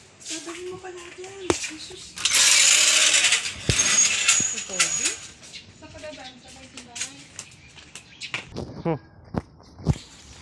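Rough rustling and scraping hiss from a phone being handled and rubbed against fabric, loudest for about three seconds in the middle, with a few sharp clicks and faint voices.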